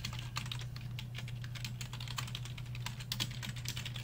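Typing on a computer keyboard: a quick, irregular run of keystrokes entering a search query, with a steady low hum beneath.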